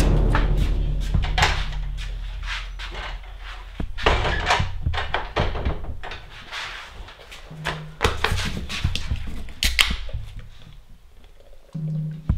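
Irregular thuds and knocks from someone moving about and handling things, one set against a wooden plank door, while a deep music note dies away over the first few seconds.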